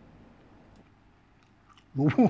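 Quiet room with a few faint, light clicks of a fork against a plastic food container.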